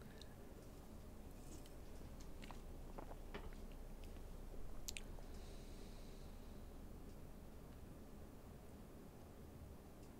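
Faint, scattered clicks and small mouth and handling noises close to a microphone, with a sharper click about five seconds in followed by a short hiss.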